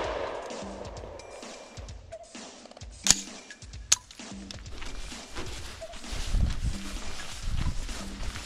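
Background music playing, with two sharp rifle-shot cracks a little under a second apart about three seconds in, the first one louder.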